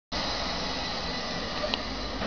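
Diesel shunting locomotive's engine running steadily, a continuous even mechanical hum with a brief tick near the end.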